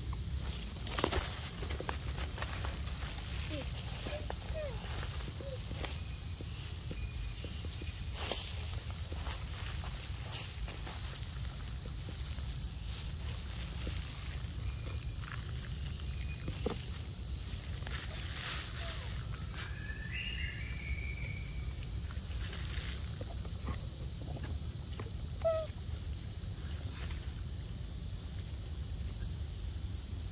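Outdoor forest ambience with a steady high hum and a low background rumble, broken by scattered soft clicks and rustles as a young macaque handles and eats a piece of mango in dry leaf litter. A short chirping call comes around twenty seconds in.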